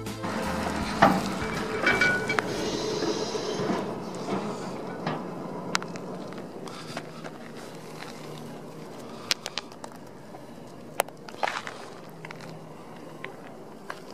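Outdoor handheld recording over dry, stony ground: a rustling, wind-like noise that is loudest in the first few seconds, then scattered sharp clicks and scuffs from stones and handling.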